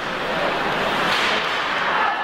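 Live ice hockey play in an arena: a steady rush of noise from the rink that swells about a second in.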